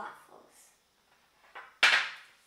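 A small glass bowl with a metal whisk in it set down on the tabletop: one sharp clack near the end, with a softer knock just before it.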